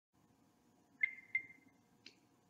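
Two short high-pitched electronic pips about a third of a second apart, each ringing briefly, over a faint steady hum.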